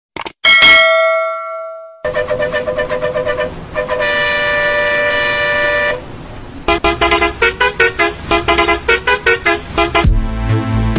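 A couple of clicks and a bell chime that rings out for about a second and a half, then a bus horn: a run of rapid toots, a long steady blast, and near the end a faster run of pulsing toots that step between pitches.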